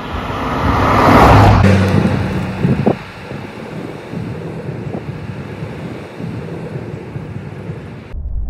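Rolls-Royce Corniche convertible with its 6.75-litre V8 passing close by: engine and tyre noise swell to a loud peak about a second in, then ease off as the car drives away, the engine running steadily.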